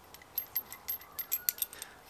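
Small metal fittings clicking and clinking in the hands as a brass barbed elbow is put together with a threaded bulkhead fitting and its nut: about a dozen light, irregular ticks.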